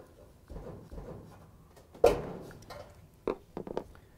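A small flathead screwdriver pries the spade wire terminals off an electric dryer's thermal cutoff. A sharp snap comes about two seconds in as a terminal pops off, and a few smaller clicks follow near the end.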